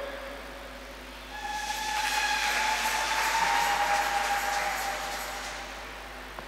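Congregation applauding in welcome, starting a little over a second in, swelling and fading out after about four seconds, with a held whistle-like tone running through the clapping.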